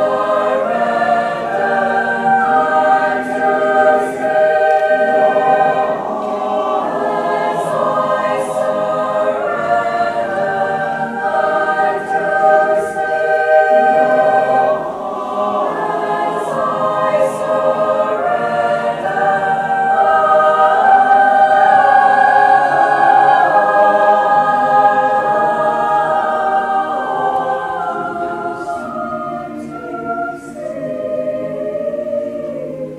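Mixed high school choir singing held chords. It swells to its loudest about two-thirds of the way through and fades near the end.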